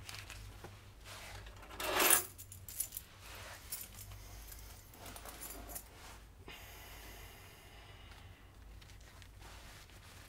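Small metal objects jingle briefly about two seconds in as clothing and pocket contents are handled, followed by a few faint clicks and a soft rustle of fabric over a low room hum.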